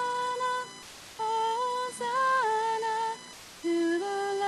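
A woman humming a slow melody in held notes, in three short phrases with brief gaps between them.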